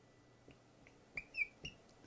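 Red dry-erase marker squeaking on a whiteboard as a number is written. It makes a few short, faint squeaks, the clearest about one and a half seconds in.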